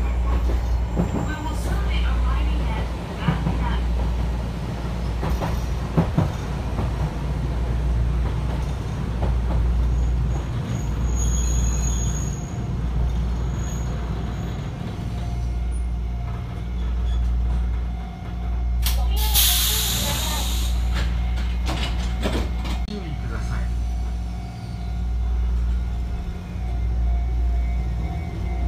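Chikuho Electric Railway 3000-series electric car at speed, heard through open windows. Its nose-suspended traction motors are growling, with a deep rumble that swells and fades. A steady whine joins from about midway, and a brief rush of noise comes about two-thirds through.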